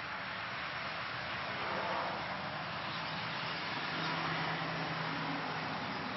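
Steady outdoor background noise: an even hiss, with a low steady hum that comes in about four seconds in and stops near the end.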